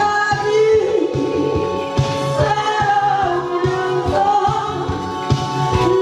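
A woman singing a Korean song into a handheld microphone over a karaoke backing track with a steady beat.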